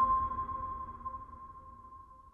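Closing chime of an outro logo jingle: one clear high note ringing and fading away, with the low music under it fading too.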